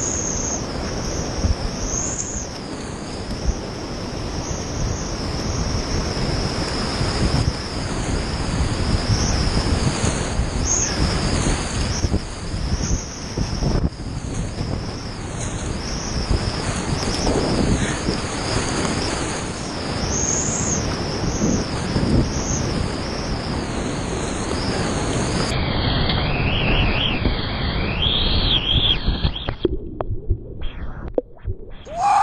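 Whitewater rapids rushing and splashing loudly and steadily around a kayak, picked up close to the water. Near the end the sound turns muffled and loses its highs as the boat plunges and water washes over the camera.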